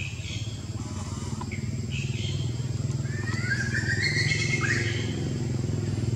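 A small motorcycle engine running nearby, its low pulsing rumble growing louder and holding steady. A few short high chirps sit over it, with one longer gliding call about halfway through.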